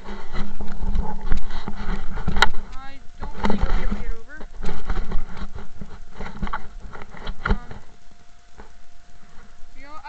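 Close rustling, crackling and knocking of brush and handling against the camera's rubber case as someone pushes through thorny undergrowth, with a few short series of quick chirps about three and four seconds in and again near the end.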